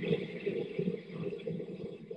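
Steady noise of a hand grubber, a big rake, dragged through a bed of germinating barley on a malt floor, heard through a video call.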